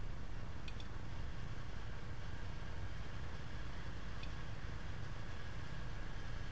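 Steady low room hum with background hiss, and two faint ticks, one early and one a little after the middle.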